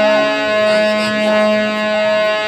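Harmonium holding a steady sustained chord, its reed tones unchanging, with faint wavering pitched sounds above it.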